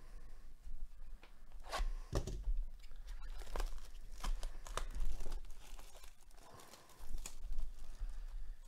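A sealed box of baseball cards being torn open and handled: a run of short, sharp rips and crackles of its wrapping and cardboard.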